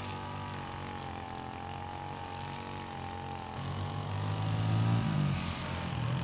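An engine running steadily, its low hum growing louder from about three and a half seconds in.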